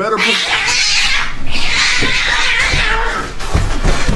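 An angry cat yowling loudly for about three seconds, followed by a few thumps near the end.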